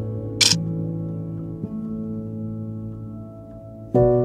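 Soft instrumental background music with slow held notes, quieting toward the end. About half a second in, a single short camera shutter click.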